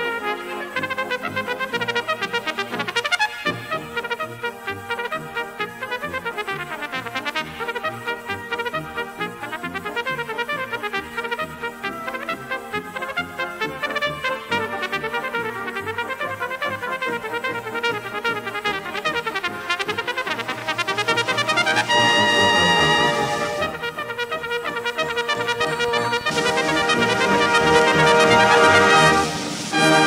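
Solo cornet with brass band accompaniment playing a slow melody with variations. For about the first twenty seconds the cornet plays quick runs of short tongued notes. After that the band plays long held chords, and these are loudest near the end.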